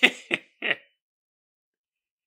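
A man's stifled laughter: three short, breathy bursts in the first second.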